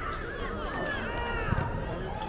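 Overlapping shouts and calls of players and spectators at an indoor youth soccer game, with a single thump about a second and a half in.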